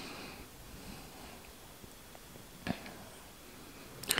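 Quiet room tone during a pause in speech, with one short click about two-thirds of the way in.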